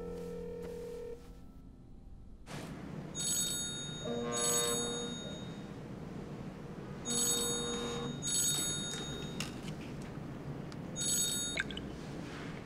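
Mobile phone ringing: two pairs of rings a few seconds apart, then one more ring that stops abruptly near the end.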